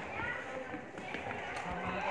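Indistinct voices of other people in a stone-walled fort passage, with no clear words, and a few faint taps.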